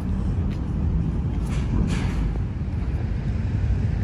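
Steady low rumble of city road traffic, with no distinct events standing out.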